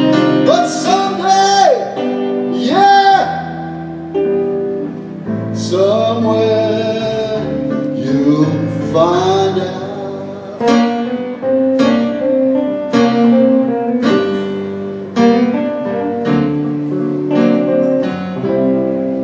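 Live blues instrumental break: a Gibson ES-335 electric guitar plays lead with bent notes, then a run of picked notes, over sustained electric keyboard chords.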